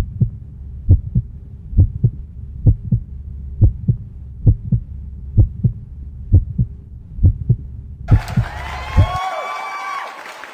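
Heartbeat sound effect, a low double thump about once a second over a steady low hum, laid in for suspense during the taste test. About eight seconds in, the beats give way to a brief sound effect with gliding pitch.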